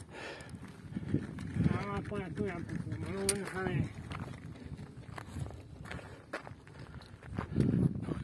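Indistinct voices talking in the background, with a few short clicks and knocks.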